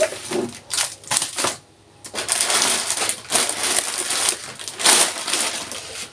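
Rustling and crunching of bags and packaging being handled and set down: several short bursts, a brief pause, then a longer stretch of rustling with another burst near the end.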